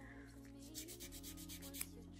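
Fine-grit nail buffer (the pink, finer side of a pink-and-green buffer block) rubbing quickly back and forth across a natural fingernail in faint, rapid, even strokes, smoothing the nail plate.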